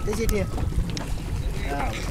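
People's voices talking briefly, once near the start and again near the end, over a steady low rumble.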